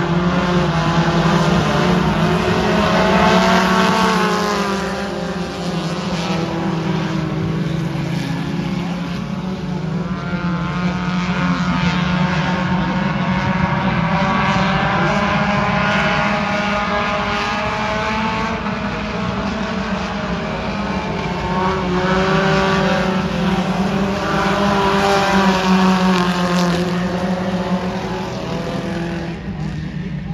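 A pack of four-cylinder mini stock race cars running on a dirt oval, engines revving up and easing off in repeated waves as the cars come through the turns and pass.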